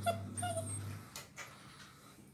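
A black-and-tan German Shepherd puppy, about seven weeks old, whimpers while being held and handled: two short, high whines in the first second. A couple of faint handling clicks follow.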